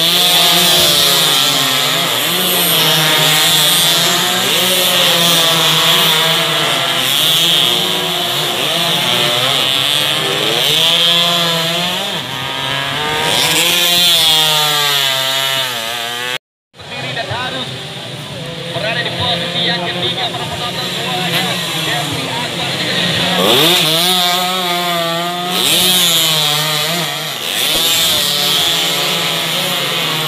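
Several two-stroke underbone race motorcycles buzzing at high revs as they pass, their pitch rising and falling with throttle and gear changes. The sound cuts out briefly just past the middle.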